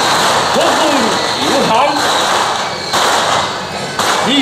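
A string of firecrackers crackling continuously, with people's voices over it. The crackling eases a little near the end.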